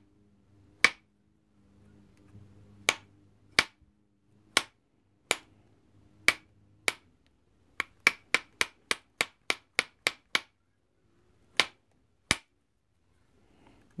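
Sharp clicks of small flakes snapping off a stone edge under a copper-tipped pressure flaker as a stone drill is pressure-flaked. About twenty single clicks at an uneven pace, with a quicker run of about three a second a little past the middle.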